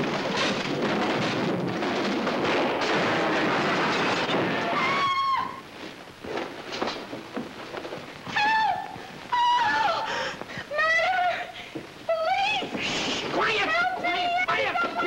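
Loud, sustained crashing and clattering of wooden boards and furniture collapsing for about five seconds. Then a voice breaks into a string of high, wavering, trembling wails that rise and fall, a comic whimpering or crying.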